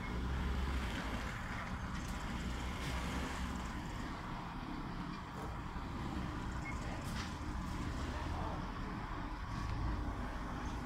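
Diesel engine of a large coach bus running with a steady low rumble as the bus pulls slowly forward out of a gateway.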